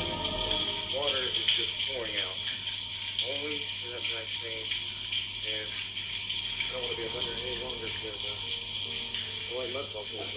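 Faint, indistinct voices, too unclear to make out, over a steady hiss and a low hum.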